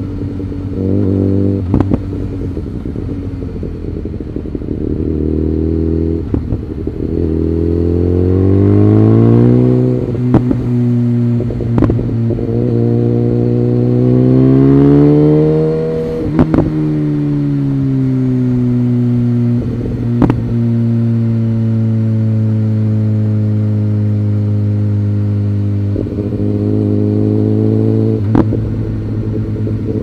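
BMW S1000R's inline-four engine on the overrun and light throttle, heard from the rider's seat. The engine note climbs, holds and drops again several times as the throttle is rolled on and off, with a sharp click now and then.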